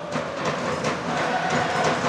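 Rink-side sound of ice hockey in play: skate blades scraping the ice and sticks clicking on the puck over a steady arena noise.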